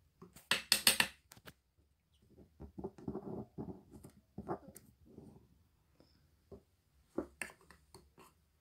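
A metal fork scraping and clinking against a steel bowl of melted chocolate, loudest about a second in and again briefly near the end. Softer, lower scraping and shuffling fills the middle.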